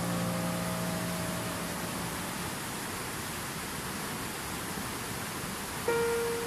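Steady rushing of a fast-flowing stream, an even hiss of water. A held piano note fades out over the first two seconds, and a new piano note is struck near the end.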